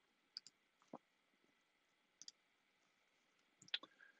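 A few faint, sharp clicks from computer controls being operated: a pair about half a second in, a single click near one second, another pair just after two seconds, and a louder little cluster near the end.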